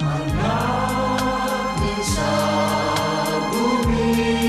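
Pop song with group choral singing over held bass notes and chords, driven by a steady cymbal beat.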